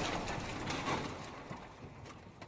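Clattering sound effect of a pile of small boxes tumbling, fading away with scattered small knocks, a few of them near the end.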